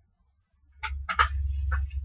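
Handling noise close to the microphone, starting about half a second in: a string of short clicks and rustles over a low rumble, as items are rummaged for and the desk is bumped.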